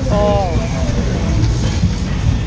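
Fairground ski jump ride running with a heavy low rumble as its car moves along the track, and a short voice-like call that falls in pitch about a tenth of a second in.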